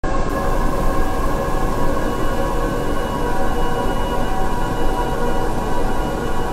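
A loud, steady drone that starts suddenly and holds unchanged: a dense rumbling noise with several sustained tones laid over it.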